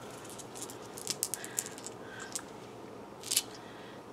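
Small items and their packaging being handled by hand: a scatter of faint light clicks and crinkles about a second in, and a short rustle near the end.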